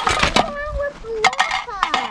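Young children's high voices calling and talking indistinctly, with short crackles of feet on dry leaf litter.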